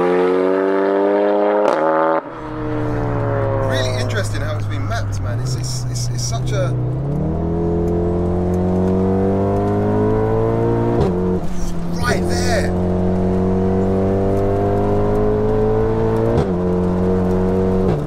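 Heavily tuned big-turbo 2.0-litre four-cylinder engine of a 750 hp VW Golf R pulling hard at full throttle, its pitch climbing steadily through each gear and dropping at each upshift, twice in the second half. There is a sudden change in the sound about two seconds in.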